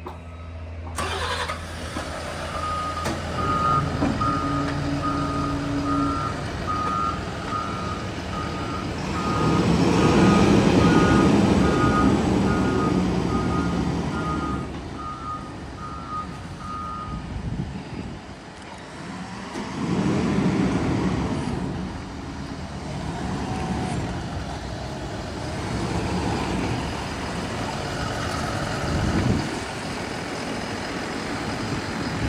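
Doosan D140S-7 diesel forklift engine running while the forklift drives, its reverse alarm beeping steadily until about halfway through. The engine rises and falls with throttle, loudest about a third of the way in and again about two-thirds in.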